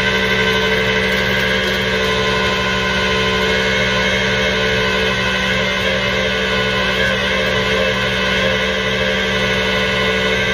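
Tow truck's engine running steadily at constant speed while its winch drags a car up out of a ditch, with a steady whine over the engine note.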